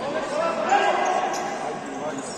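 Futsal game in an echoing sports hall: a player's shout is the loudest sound, from about half a second to just past one second, over ball kicks and the murmur of other voices.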